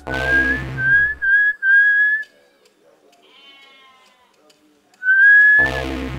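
Whistling in short rising notes, four in quick succession and then one more near the end, each over low bass thuds from the film's music.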